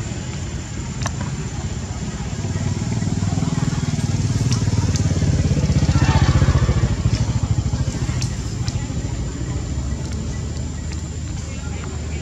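A passing motor vehicle's engine, most likely a motorcycle, rumbling low. It grows louder to a peak about halfway through, then fades.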